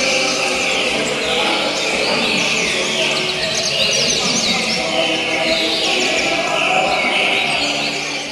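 Several caged seedeaters (coleiros / papa-capins) singing at once, their short, rapid, chirping song phrases repeating and overlapping without a break.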